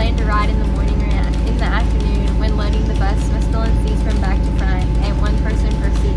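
School bus diesel engine idling, a steady low rumble with a constant hum, with a girl's voice over it.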